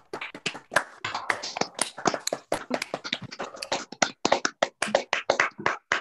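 Several people clapping in applause over a video call, the claps coming as a quick, uneven stream of sharp smacks.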